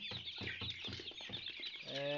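A flock of young Kuroiler chickens clucking and cheeping together, many short calls overlapping.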